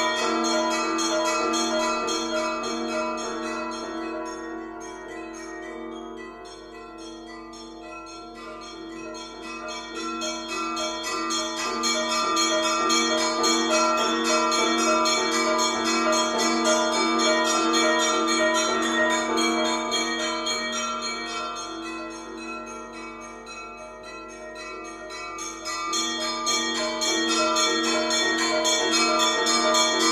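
Contemporary chamber music for piano and percussion: a dense texture of many sustained ringing pitches. It fades to a low point about seven seconds in, swells back, then fades and swells once more near the end.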